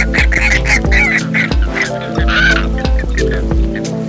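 A flock of Chilean flamingos calling in quick repeated calls, about five a second, with one longer call around the middle. They are heard over background music with a steady beat and held chords.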